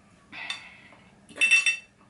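Metal fork scraping and clinking against a dinner plate, twice, the second time louder with a short ring.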